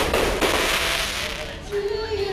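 Fireworks going off: a sharp bang, a second about half a second later, then a dense spray of noise that dies down about a second and a half in.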